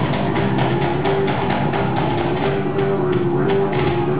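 Live rock band playing, a drum kit keeping a steady beat of hits under repeating low pitched notes.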